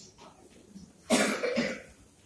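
A man coughs once about a second in: a short, sudden, two-part cough.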